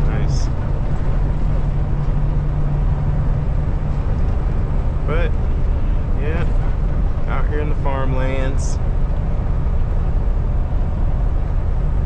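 Steady low drone of a Kenworth T680 semi truck running at highway speed, heard inside the cab, with engine and road noise together. A low hum stands out in the first few seconds and then fades.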